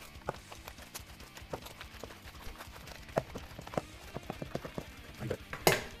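Hands squeezing and kneading a wet ground-beef meatball mix of eggs, milk and breadcrumbs in a stainless steel bowl: an irregular run of short wet squelches and clicks.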